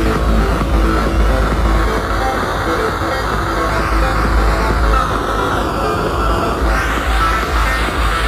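Techno played loud over a club sound system, with heavy steady bass. A sweeping sound in the track falls in pitch through the middle, then rises steeply near the end.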